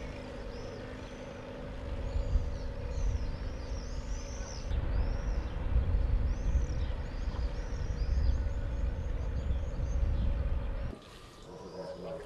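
Outdoor ambience: wind buffeting the microphone in gusts over a steady engine hum, with many birds chirping repeatedly in short high calls. It all cuts off suddenly near the end.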